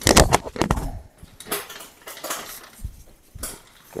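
Recumbent trike drivetrain clicking and rattling as the chain is shifted toward the large chainring and largest rear cog: a quick run of sharp clicks in the first second, then scattered single clicks.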